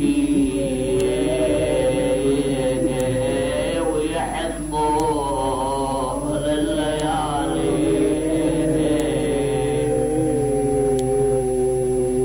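A man's voice chanting a mourning lament in long, held notes whose pitch wavers slowly, with a short break about four to five seconds in. A low steady hum runs underneath.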